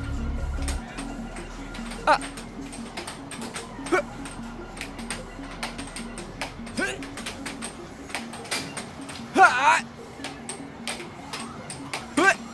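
Air hockey puck clacking off the mallets and table rails in quick, irregular hits over steady background music.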